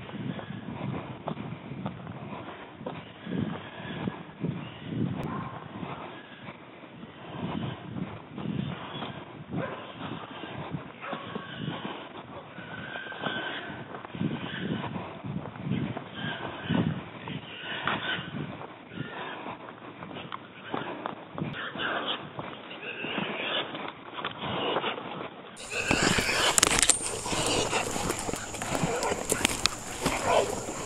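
Hog dogs barking and baying a hog off in the woods, over the thuds and brush noise of someone moving fast through the undergrowth. Near the end the sound turns suddenly louder and fuller.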